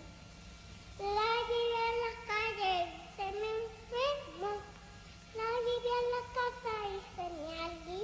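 A high voice singing a slow wordless melody with a wide vibrato on the soundtrack, in three phrases with short pauses between them.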